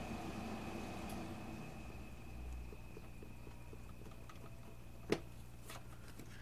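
Faint scratching of a panel-line scriber scoring a notch into a small piece of thin white plastic, with a few small ticks, over a steady low hum. One sharp click about five seconds in.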